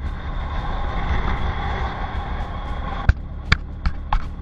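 Motorcycle riding at speed on a dual carriageway, heard from a helmet camera: steady wind rush and road noise over the engine's low rumble, with a few sharp clicks in the last second.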